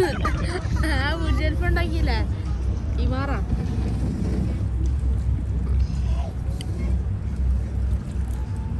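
Steady low rumble of a cruise boat's engine, with people's voices over it in the first few seconds.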